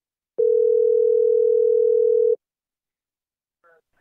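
Telephone ringback tone: one steady two-second ring, heard by the caller while the line rings at the other end.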